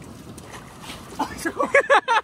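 A man's short exclamation about a second in, then laughter near the end, over a low, steady background of wind and water around a small boat.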